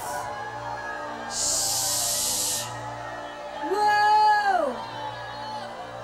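Soft worship music of sustained keyboard chords. About a second and a half in there is a brief hiss, and near the middle a voice holds one high note, then slides down and breaks off.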